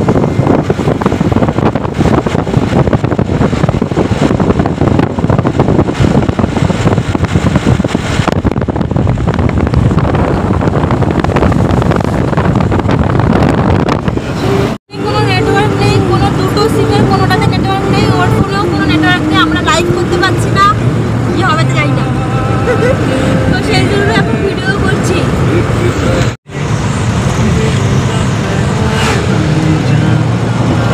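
Steady road and wind noise from a moving vehicle fills about the first half. After an abrupt cut, a woman talks inside the vehicle over a low, steady engine hum. After a second cut, shortly before the end, the road noise returns.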